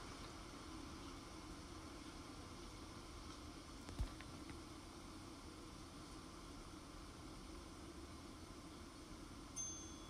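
Faint, steady wind noise with no clear pattern, and one soft thump about four seconds in.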